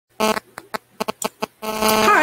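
A rapid run of short, separate buzzy blips, then a steady buzzing tone that sets in near the end.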